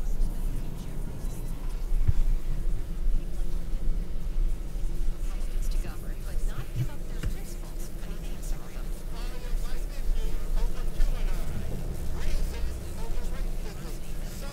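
Radio-frequency interference picked up by the Zoom M3 MicTrak stereo shotgun microphone/recorder: a steady low buzzing hum with faint radio voices and music breaking through, typical of poor RF shielding letting probably FM or AM broadcast radio into the plastic chassis. Two brief low thumps come about two seconds in and again near seven seconds.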